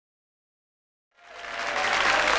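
Silence, then a studio audience's clapping and cheering fades in just over a second in, rising quickly.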